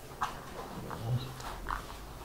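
Whiteboard eraser wiping marker off a whiteboard in a run of short strokes with brief squeaks.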